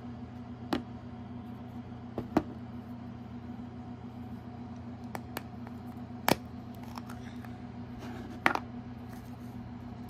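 A handful of sharp, spread-out clicks and snaps from hands opening a toy surprise's plastic packaging, over a steady low hum.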